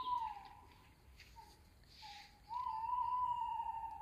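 Tawny owl hooting: a long hoot, a pause broken by a couple of short notes, then a long, slightly quavering hoot.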